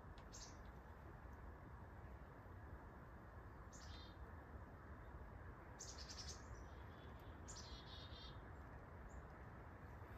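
Quiet woods with a few short, high-pitched bird chirps, about five, scattered over a steady low background hiss.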